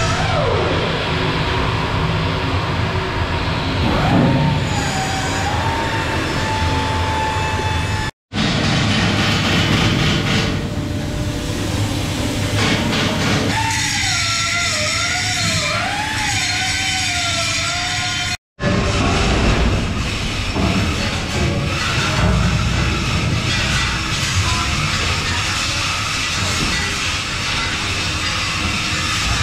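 Din of ship engine-room repair work in several cut-together clips. Near the middle an angle grinder cuts metal, its whine wavering up and down in pitch as the load changes.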